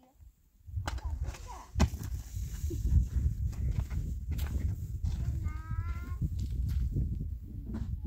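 Wind buffeting the microphone and footsteps on stony ground, with a sharp thump about two seconds in as a boy jumps down from a low roof. A short high call follows around six seconds in.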